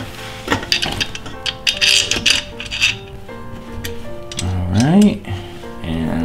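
Sharp metallic clicks and clinks of aluminium extrusion beams, screws and a hex key being handled while the Ender 3 Pro frame is put together, over background music. A short rising vocal sound comes near the end.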